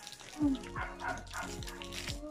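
A dog barking in the background over background music, the loudest bark about half a second in.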